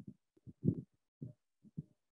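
Short, faint, muffled fragments of a woman's low murmuring, heard through a video call's audio and chopped into about five separate bits, with dead silence between them where the call's noise suppression shuts off.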